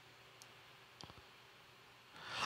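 Near silence: room tone, with a few faint clicks about half a second and a second in.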